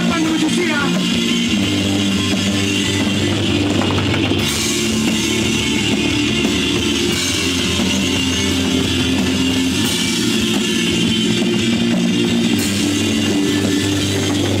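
Heavy rock song played by a full band, with a drum kit and electric guitars, at a steady, even loudness throughout.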